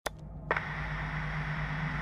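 Steady static hiss with a low hum, setting in with a click about half a second in, with another click near the end.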